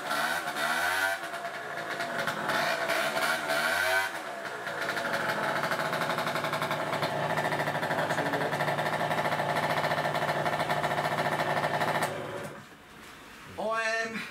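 Gilera DNA 50cc two-stroke moped engine through an aftermarket full-power exhaust, revved up and down with several throttle blips, then held at steady revs for about eight seconds before being switched off suddenly near the end.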